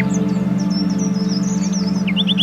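Ambient meditation music: a low, steady drone that pulses rapidly, billed as beta-wave binaural beats, with birds chirping in short high notes layered over it.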